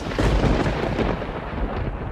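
Thunder: it starts suddenly and goes on as a deep, steady rumble.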